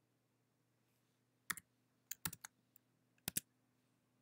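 Computer keyboard keys being pressed: a handful of sharp key clicks in three small clusters, starting about one and a half seconds in.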